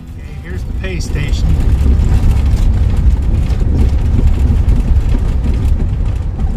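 Low road rumble and gravel noise from a campervan driving along a gravel road, heard from inside the cab. It builds over the first couple of seconds as the music drops away, then holds steady.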